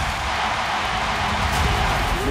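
Stadium crowd cheering just after a penalty goal goes in, over background music.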